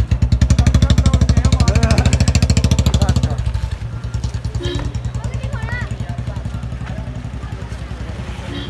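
Motorcycle engine running with a fast, even beat, heard close from the bike itself. It is loud for the first three seconds or so, then eases off to a lower, steadier level. A few brief voices are heard over it.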